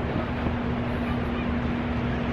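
Steady outdoor background noise: an even rush, likely wind and surf, with a low steady hum running underneath.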